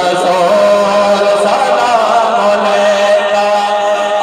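A man's unaccompanied voice singing an Urdu naat, a devotional poem, into a microphone. He holds one long, slightly wavering note from about half a second in.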